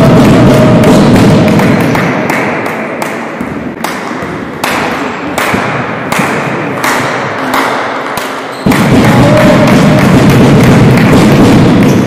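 Rhythmic thumping over a dense wash of crowd noise, echoing in a sports hall during a basketball game. The noise is loudest at the start and again from about three-quarters of the way in.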